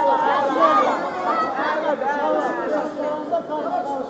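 Many people talking at once: a loud, continuous babble of crowd chatter with no music.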